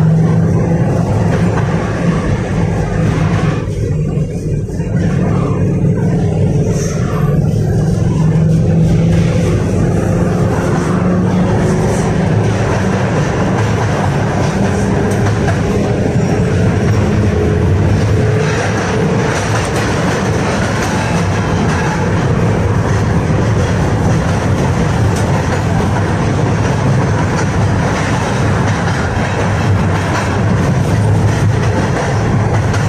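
The inside of a KTM-5M3 (71-605) tram in motion: steady running noise of steel wheels on the rails, with a low hum from the traction motors and a faint tone that rises and falls slowly partway through.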